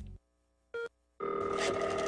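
A short electronic beep, then a moment later a steady telephone-style ring tone held for about a second, made of several steady pitches together.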